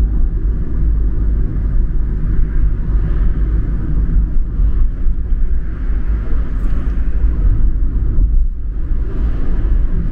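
Car driving at highway speed, heard inside the cabin: a steady low rumble of engine and tyres on the road, with a higher tyre hiss that swells and fades a few times.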